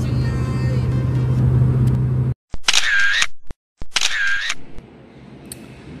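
Background music with a steady low drone that cuts off abruptly a little over two seconds in, followed by two identical short, bright sound effects about a second apart, then quiet room tone.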